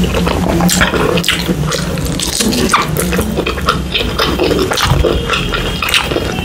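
Close-miked wet chewing and lip-smacking of a person eating, with many short sticky mouth clicks.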